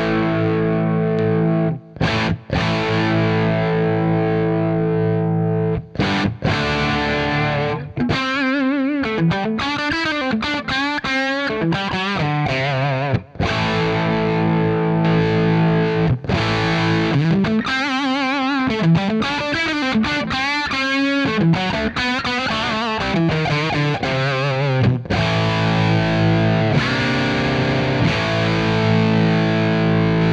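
Overdriven electric guitar through a Danelectro The Breakdown boost/overdrive pedal on its first break-up setting, driving a Friedman Dirty Shirley 40-watt amp set for a little breakup. Ringing chords open the passage, then single-note lead lines with string bends and vibrato, then held chords again near the end.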